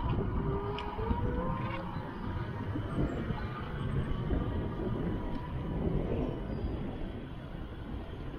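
Wind buffeting the camera microphone over the road rumble of a vehicle pulling away, with a faint rising whine in the first couple of seconds as it speeds up.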